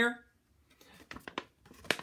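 A sheet of paper crinkling and crackling as it is handled and turned, a run of short crackles ending in one sharper snap near the end.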